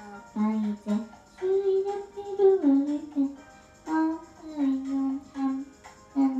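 A girl singing a melody into a handheld microphone, in short phrases of held notes that step up and down in pitch.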